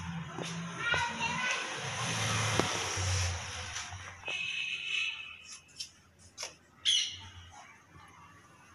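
Background voices, among them a loud high call about seven seconds in, with a rush of noise a couple of seconds in.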